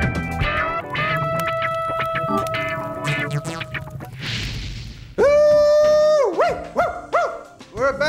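Theme music for a TV show's opening titles, with a long held note, a short rush of hiss about four seconds in, and a loud held note a second later.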